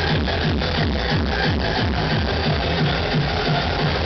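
Dance music from a DJ set playing loud over a club sound system, with a steady beat and heavy bass.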